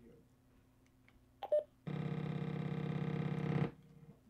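A short click as the AnyTone 878UV II Plus DMR handheld is keyed, then a steady buzz with many even tones for just under two seconds while it transmits, cutting off abruptly when the key is released. This is the pulsing buzz typical of a DMR radio's transmission getting into the recording.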